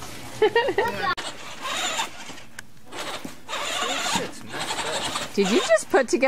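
Short high-pitched voice sounds, then rustling handling noise, with a person starting to speak near the end.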